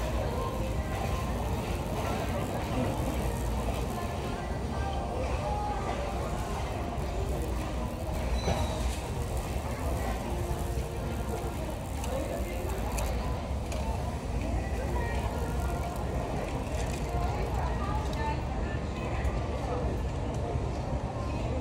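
Steady low rumble of a manual wheelchair and a shopping cart rolling across a store floor, with indistinct chatter from other shoppers and faint background music.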